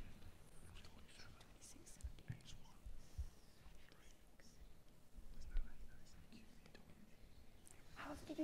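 Faint whispering of several people conferring quietly over a quiz answer, with a few soft low bumps.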